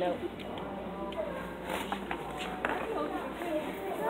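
Indistinct background voices and chatter, with a few light knocks and rustles.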